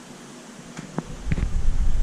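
Steady hum of fish-room equipment, then a few light clicks and, from about halfway, a loud low rumble of handling noise as the camera is moved.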